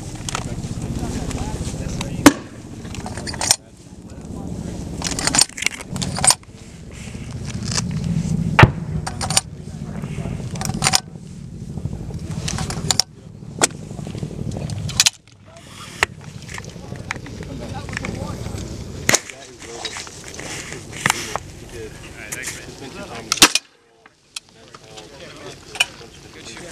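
Sharp metallic clicks and clacks of an M32 40mm revolver-type grenade launcher being handled and loaded, its frame opened and cylinder worked, about a dozen separate clicks with a low wind rumble underneath.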